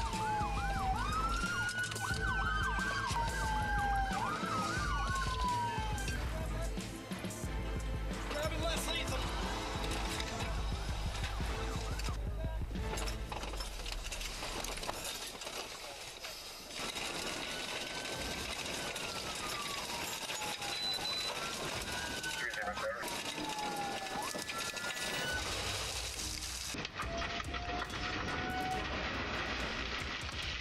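Several police car sirens wailing at once, each sweeping down in pitch and jumping back up, over steady background music. The sirens drop away in the middle and return for a while in the second half.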